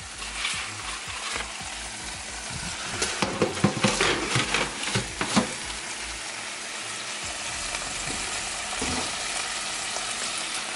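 Foil-lined metal sheet pans clattering and scraping on the wire racks of an oven as they are slid in, a cluster of knocks about three to five seconds in. A steady hiss runs underneath.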